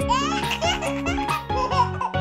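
A baby laughing in a run of quick giggles over bright children's background music.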